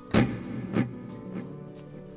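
Electric guitar note played through the Tech 21 FlyRig5 v2's delay: one sharp pick attack, then two fainter repeats about 0.6 s apart, fading away, over a held tone.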